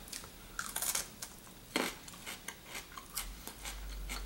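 Crisp crunching and chewing of a raw green almond fruit's firm green hull, as a series of irregular crunches with one louder crunch a little under two seconds in.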